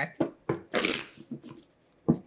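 A tarot deck being shuffled by hand: a few short card snaps, then a longer rush of cards about a second in, then a few lighter snaps.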